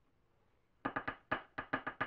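Pencil tapping out Morse code on a desk: a quick, unevenly spaced run of about eight taps, starting a little under a second in.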